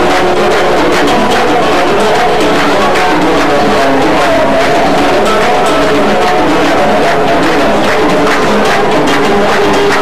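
A Moroccan folk band playing live: plucked string instruments carry a melody over a steady rhythm of hand drums.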